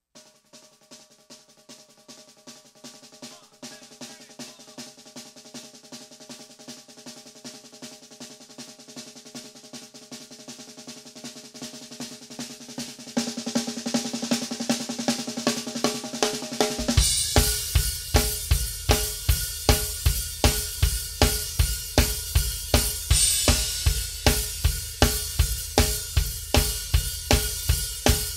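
Drum kit played solo: the snare starts with quiet, rapid, even strokes like a roll, gets louder about halfway through, and then the full kit comes in with bass drum, snare and cymbals in a steady, loud beat.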